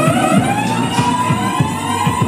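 A siren sound effect in the dance track playing over the club's sound system: a wail that rises through the first second and then holds its pitch, over a steady bass drum beat.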